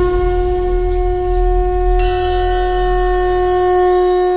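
A conch shell (shankh) blown in one long, steady note, with a low rumble beneath it.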